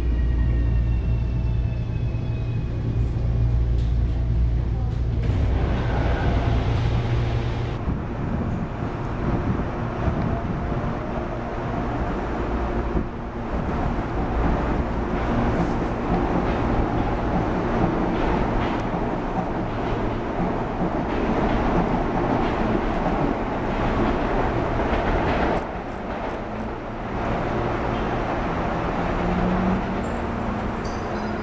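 Electric commuter train noise. At first, inside the car, there is a heavy low hum with a faint whine slowly falling in pitch as the train slows. After that comes a continuous rumble of wheels on rails as a CPTM Série 8500 electric multiple unit runs past on the tracks.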